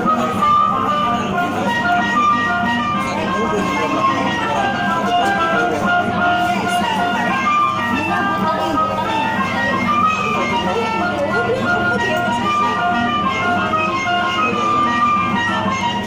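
Coin-operated kiddie ride car playing its electronic jingle, a continuous tune of short bright notes, with voices in the background.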